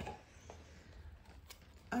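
Faint handling of a tarot card deck and its cardboard box, with two light clicks about half a second and a second and a half in.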